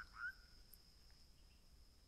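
Near silence: faint outdoor room tone with a thin, steady high tone in the background.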